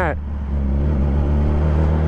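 2017 Yamaha R6's inline-four engine running at a steady, low pitch while cruising at low speed, with wind and road noise, heard through a microphone inside the rider's helmet.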